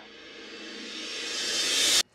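A rising whoosh sound effect: a swell of noise that grows steadily louder and brighter, then cuts off suddenly at the end, over faint sustained music tones.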